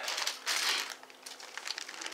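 Clear plastic zip-top bag crinkling and rustling as it is handled, in two short spells in the first second, then fainter.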